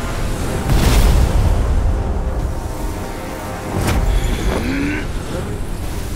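Animated-fantasy magic-energy sound effects over a sustained music score: a deep continuous rumble, with a loud swelling whoosh about a second in and another near four seconds in.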